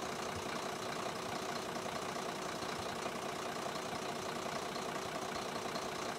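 A vehicle engine idling steadily, an even rumble with a hiss over it.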